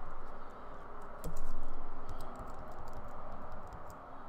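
Computer keyboard keys tapped in a quick, irregular series of clicks, over a steady background hiss.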